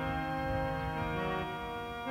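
Harmonium playing sustained chords that shift every second or so, with a faint low pulsing underneath.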